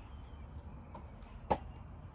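Quiet outdoor background noise with one brief sharp click about one and a half seconds in.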